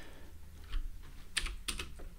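Computer keyboard typing: a few separate keystrokes, mostly in the second half.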